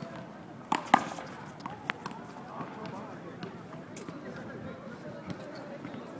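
Sharp smacks of a small rubber handball being struck by hand and hitting the concrete wall and court: a loud pair about a second in, then fainter single hits about two and four seconds in.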